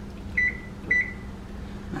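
Kitchen timer beeping: two short, high beeps about half a second apart, each with a brief fading tail.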